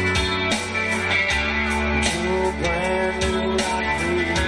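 A live rock band plays electric guitar, bass and drums, with a steady drum beat of about two hits a second under sustained guitar chords.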